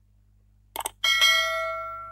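Subscribe-button sound effects: two quick mouse clicks, then a bright notification-bell ding about a second in that rings on and slowly fades.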